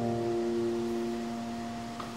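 Background music: a piano chord struck just before, held and slowly fading.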